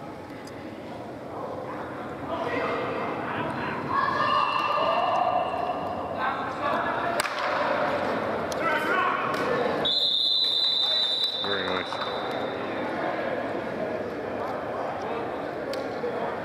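Players shouting on an indoor turf field, with a few sharp thumps. About ten seconds in a referee's whistle sounds one long blast.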